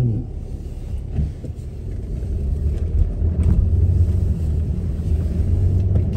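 Low, steady rumble of a car's engine and road noise heard from inside the cabin while driving, growing louder about two seconds in.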